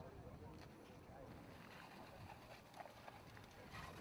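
Near silence: faint background ambience with distant, indistinct voices.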